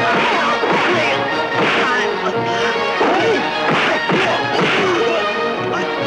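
Dubbed kung fu film fight sound effects: punch and blow impacts about once a second, over a music score, with short shouts among them.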